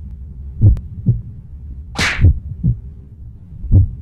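Slow, paired low thuds in a heartbeat-like rhythm, with one short sharp hiss about two seconds in.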